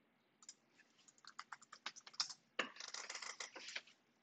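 Faint keystrokes on a computer keyboard: separate key clicks at first, then a faster, denser run of keys about two and a half seconds in.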